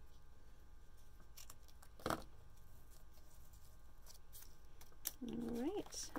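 One sharp snip of small scissors cutting ribbon ends about two seconds in, with a few fainter clicks of the blades before and after, over quiet room tone.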